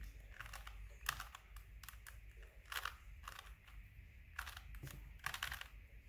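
A plastic 3x3 Rubik's cube being turned by hand, its layers giving faint, irregular clicks and clacks as they rotate.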